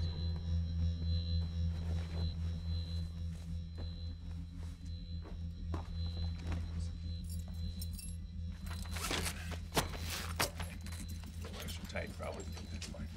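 Low, steady droning film score with a faint high tone held above it, and a few sharp clicks and clatters near the end.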